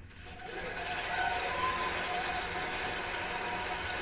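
Audience applause from an awards-show broadcast, played through a TV's speakers and picked up by a room microphone. It swells in during the first second and then holds steady, with a few faint cheers in it.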